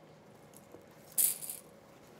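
Ribbon rustling and crinkling in the hands as it is pinched and twisted into a bow loop, one short burst a little past a second in.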